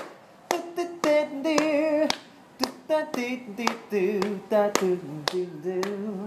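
A man singing a wordless melody a cappella on 'do' syllables, keeping time with sharp hand slaps on his knee about twice a second.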